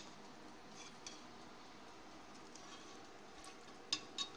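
A few faint drips of whey falling from a slotted spoon of cheese curds back into the pot, heard as scattered small ticks.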